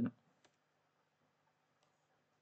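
A single keyboard keystroke click about half a second in, with a fainter click near the end; between them near silence.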